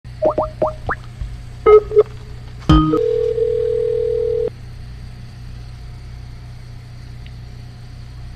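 A telephone call connecting over the line: a few quick rising chirps and two short beeps, then a click and one steady ring tone lasting about a second and a half. A low line hum continues underneath.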